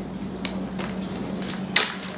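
Quiet kitchen room tone with a steady low hum, broken by a couple of light clicks or taps, the sharper one near the end.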